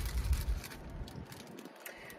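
Hands handling a peeled navel orange, with faint soft rustles and light clicks, over a low rumble that dies away in the first half-second.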